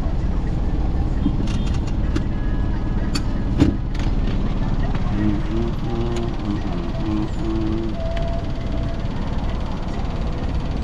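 Inside a moving car: steady low rumble of the engine and road, with a few sharp clicks and a knock about three and a half seconds in.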